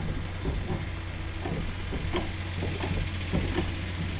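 Hand-operated hydraulic cab-tilt pump on a 7.5-ton lorry being worked with a bar, giving short, irregular knocks and clicks about every half second as the cab tilts forward. A steady low hum runs underneath.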